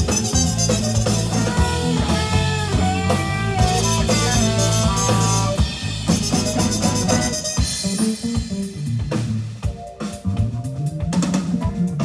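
Live jazz-funk band: trumpet playing a melodic line over electric guitar, electric bass and drum kit with busy cymbals. About two-thirds of the way through, the trumpet drops out and the music thins to guitar, bass and drums.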